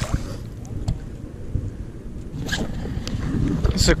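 Wind rumbling on a body-worn camera's microphone, with handling and brushing noise as the angler moves off through shoreline scrub. There is a small splash at the very start as a released speckled trout goes back into the water.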